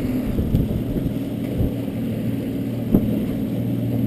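Evinrude E-TEC 135 High Output two-stroke outboard running steadily with the boat under way: a steady drone mixed with water rushing past the hull. A single sharp knock about three seconds in.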